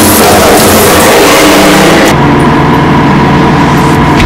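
Hydraulic press running loudly, a dense mechanical noise. About halfway through it changes abruptly, as at an edit, to a steadier hum with a few held tones.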